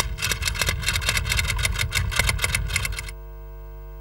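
Typewriter sound effect: a fast, even run of keystroke clicks, about ten a second, as a title is typed out. The clicks stop about three seconds in, leaving a steady low hum.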